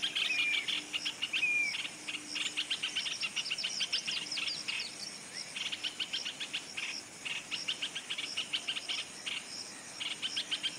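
White-browed bulbul singing: repeated bursts of fast, rattling, discordant babbling notes separated by short pauses, with a couple of short down-slurred whistled notes in the first two seconds.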